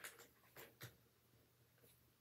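Near silence, with a few faint clicks of small plastic building pieces being handled, near the start and again just under a second in.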